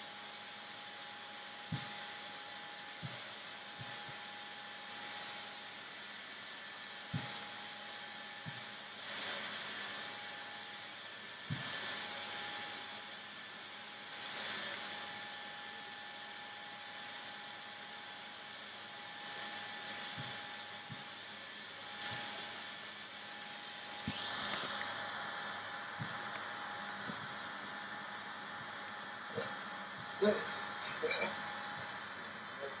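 Steady background hiss with a faint constant hum tone, a few soft knocks and occasional gentle swells of noise.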